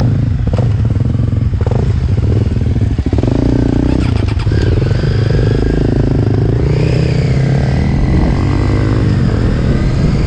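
Motorcycle engines: a Triumph Street Triple RS 765's three-cylinder engine running at a standstill as two dirt bikes ride past close by. From about a third of the way in, the engine note climbs as the bikes pull away and speed up.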